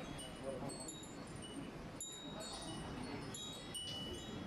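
Wind chimes hung among overhead fans, tinkling irregularly: many short, high ringing notes at several pitches, overlapping at random, over a low murmur of background chatter.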